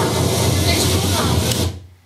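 Harsh, loud hiss with a low hum and a voice buried in it, from a poor-quality phone recording, described as the "normal sound" and not wind. It cuts off suddenly near the end.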